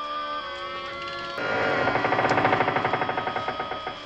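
Film soundtrack: sustained orchestral notes, then from about a second and a half in a louder rapid mechanical rattle of evenly spaced pulses under a held tone. The rattle stops just before the end, as a hatch in the ground opens onto a panel of lights.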